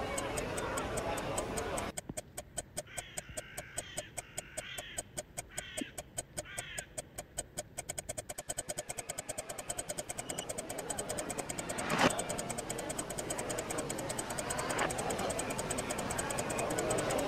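Film soundtrack: after a hazy opening, a steady ticking pulse of about five beats a second starts, then speeds up, with a single sharp hit about twelve seconds in.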